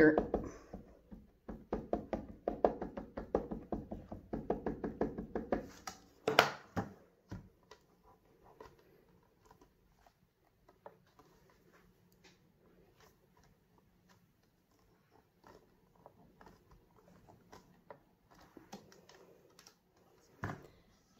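An ink pad dabbed quickly and repeatedly against a stamp for several seconds, then a single knock as the hinged lid of a stamping platform is closed, followed by faint ticks while it is pressed down by hand.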